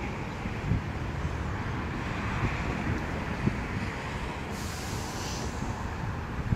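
Steady outdoor background noise: a low rumble under an even hiss, with a few faint knocks.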